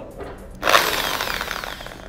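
Counterfeit Bosch GSB 13RE corded impact drill switched on about half a second in and running very loud. The noise comes from a worn gearbox: its gears are worn enough to slip when the chuck is held.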